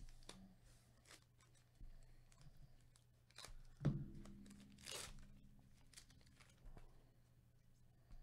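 A trading-card pack wrapper being torn open by gloved hands: short crinkles and rips, a sharp thump about four seconds in, then a longer tear about a second later.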